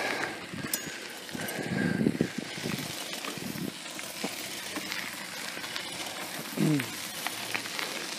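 Bicycle tyres rolling over a dry dirt road, with scattered small crunches and clicks of grit under steady rushing noise; a brief falling hum from a voice comes about two-thirds of the way through.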